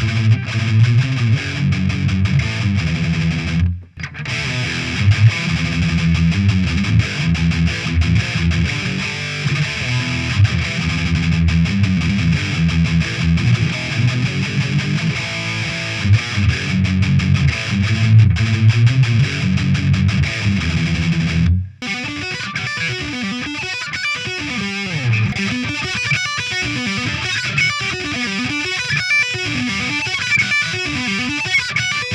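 Electric guitar riffing with heavy distortion through a Blackstar HT-DistX valve (ECC83 tube) distortion pedal, first with its old, long-played tube and then with a new tube. The playing stops for a moment about four seconds in. About 22 seconds in it stops again and goes on as a thinner, brighter part with little bass.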